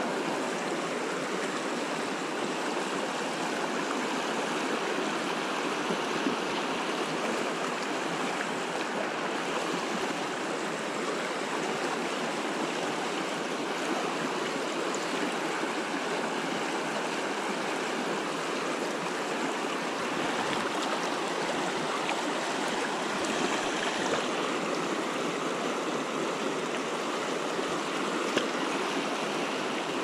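Steady rushing of flowing river water, an even, unbroken noise.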